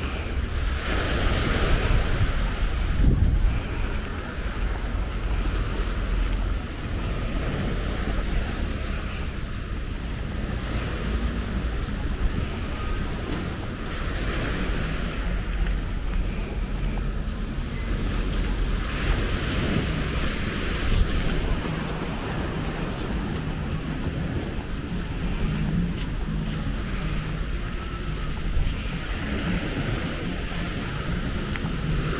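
Wind buffeting the microphone over the wash of small surf breaking along a seawall, a steady rushing noise that swells louder a couple of times.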